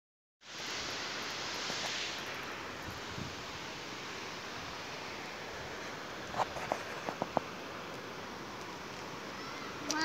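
Steady rushing noise of wind on the microphone outdoors. A few short, high vocal sounds from a small child come about six to seven seconds in.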